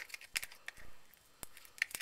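A thick salt, flour and water paste being stirred in a small plastic cup, the stirrer making a few scattered light clicks and scrapes against the cup.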